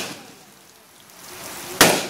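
Rain falling steadily, with a single very loud gunshot about two seconds in that starts suddenly and fades quickly. At the start, a previous shot is still dying away. The shots are a funeral gun salute.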